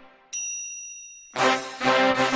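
A single high, bell-like ding in a break in the backing track, ringing and fading over about a second. The band's backing music then comes back in suddenly.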